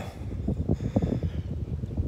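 Wind buffeting the phone's microphone, an irregular low rumble.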